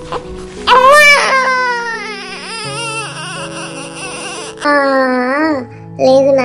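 A baby crying: a loud wail starting about half a second in that falls away over a couple of seconds, then a second, shorter cry near the end, over background music.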